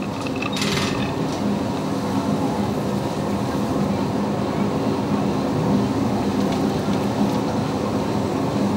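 A steady low mechanical rumble with a constant hum running under it.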